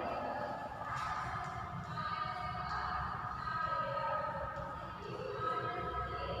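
Chalk tapping and scraping on a blackboard as a word is written, with faint voices in the background.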